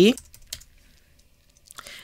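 A few soft keystrokes on a computer keyboard as a short word is typed, with one or two about half a second in and a small cluster near the end.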